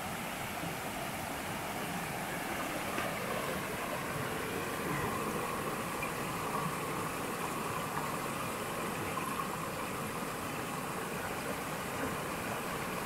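Shallow river water running over small rock cascades: a steady, even rush of flowing water.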